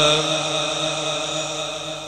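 A male naat reciter's voice through a microphone and PA, holding out the end of a long sung note. The note fades away over a steady underlying hum.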